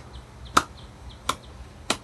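Three sharp clicks, evenly spaced about two-thirds of a second apart, over faint background hiss.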